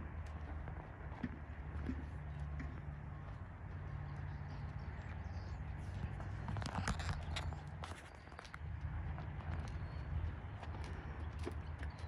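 Horse's hooves falling on soft arena sand at a walk and slow jog, soft uneven footfalls over a steady low rumble, with a cluster of sharper clicks about halfway through.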